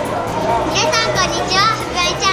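Young girls' voices, high-pitched and excited, in short bursts over a steady low background hum.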